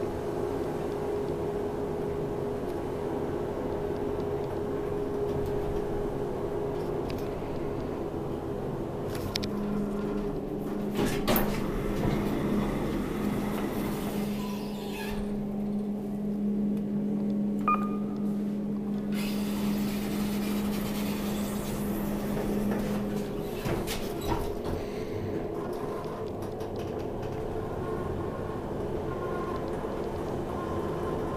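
Kone traction elevator heard from inside the car. It runs with a steady hum for the first ten seconds or so, then gives a sharp click about eleven seconds in. A steady low tone holds while the car stands at a floor and its sliding doors work, and the running hum returns from about twenty-four seconds on.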